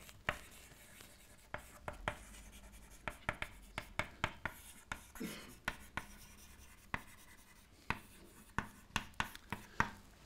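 Chalk writing on a blackboard: an irregular string of sharp taps and short scratches as letters are written, with brief pauses between strokes.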